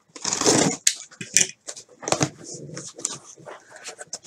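Cardboard shipping box being torn open by hand. A long rip near the start is followed by sharp crackles, scrapes and rustling as the flaps are pulled back.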